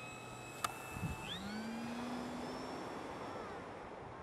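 Electric motor and propeller of a Multiplex Solius RC motor glider whining, then spinning up to full throttle at hand launch: the whine jumps up in pitch about a second in, after a sharp click. A steady hiss of wind lies underneath.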